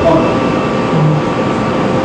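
Steady room hum with a faint constant tone, with faint indistinct voices about a second in.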